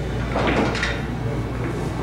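Pool hall ambience: a steady low hum with a short cluster of knocks and clatter about half a second in.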